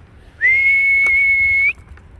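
One long, steady whistle, a single held note of just over a second with a slight upward slide at its start and end, used to call dogs on a walk.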